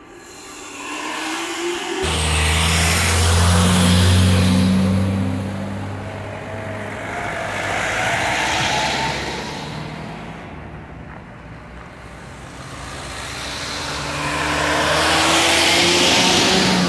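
Road noise and wind on a moving scooter in close traffic, swelling twice as larger vehicles are passed alongside. A deep engine hum from a neighbouring vehicle comes in suddenly about two seconds in, and an engine note rises slowly near the end as the vehicles accelerate.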